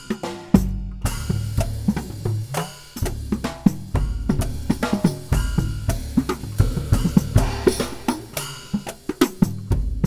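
Drum set played with a stick in one hand and the bare fingers of the other hand on the drumheads, a quick, continuous pattern of strikes over ringing low drum tones with cymbal wash.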